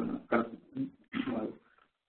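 A man's voice making a few short, halting sounds in a pause mid-sentence, then a brief silence near the end.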